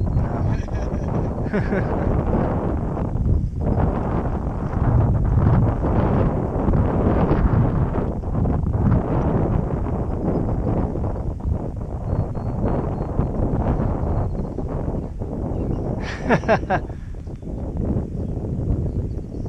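Wind buffeting the microphone hard, a loud, uneven rumble that rises and falls in gusts. About sixteen seconds in, a short high-pitched cry breaks through it.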